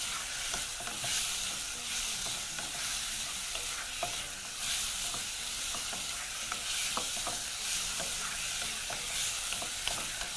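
Beef cubes sizzling in hot oil in a metal pot as they brown over high heat, stirred with a wooden spoon. Scattered small ticks and pops run through the steady hiss.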